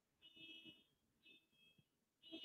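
Near silence, with two faint, brief high-pitched tones, the second shorter than the first.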